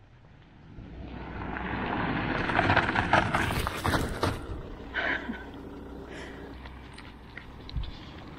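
A car approaching fast and passing close by on a gravel road, its tyres rushing and crackling on the gravel. It grows louder over the first three seconds, is loudest around three to four seconds in, then fades to a low rumble as it drives away.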